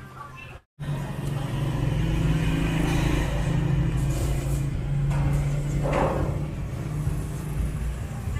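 A steady, loud low hum and rumble, as of machinery running, with a short burst of noise about six seconds in.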